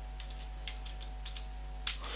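Computer keyboard keys clicking as code is typed: about ten quick, unevenly spaced keystrokes, with a louder click near the end, over a steady low hum.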